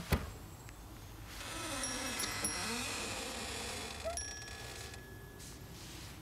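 Sound effects from an animated film: two sharp knocks, then a shop's wooden door creaking open with a faint tinkling of small chimes. About four seconds in comes a click and a single ringing ding that holds for about a second before fading.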